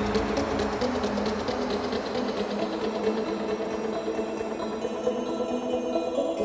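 Melodic dubstep track in its outro: the ticking beat fades out over the first couple of seconds and the bass has dropped away, leaving sustained synth chords.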